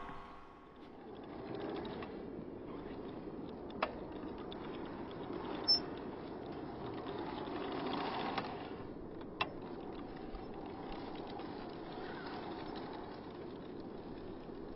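Mountain bike ridden on grass: a low rolling noise, with a few sharp clicks.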